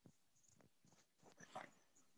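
Near silence over a video-call line, with a few faint clicks and a brief faint rustle about one and a half seconds in.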